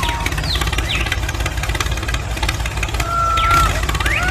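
Tractor engine running with a low, rapid chugging, with birds chirping in the background.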